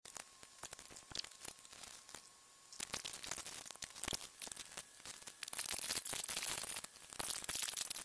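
Handling noise: a rag rustling, with scattered small clicks and knocks as skateboard wheels and hardware are handled and a first aid kit box is rummaged through. It gets busier from about three seconds in.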